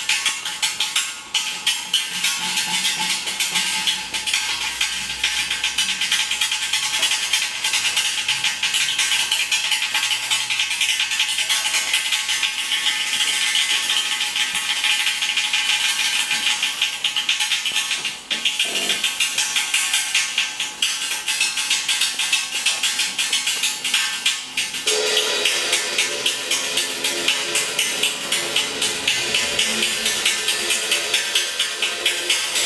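Zildjian cymbal worked with a drumstick in a fast, even stream of bright, shimmering taps while the drummer's other hand holds its edge. Low sustained pitched notes come in about five seconds before the end.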